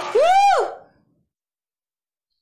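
A woman's short wordless 'oooh', its pitch rising and then falling over about half a second. The audio then cuts to dead silence.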